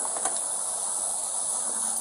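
Steady high-pitched hiss of outdoor background noise on a body-worn camera's microphone, with a faint steady low hum and a few light clicks.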